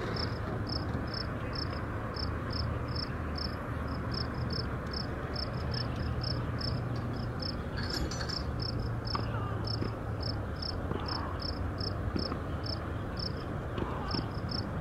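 A regular high-pitched chirp, about two or three a second, over a steady background hiss and a low hum.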